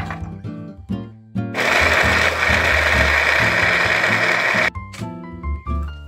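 Small electric food chopper running for about three seconds, its blade chopping carrot and red onion. It starts about a second and a half in and cuts off suddenly. Light background music with plucked notes plays throughout.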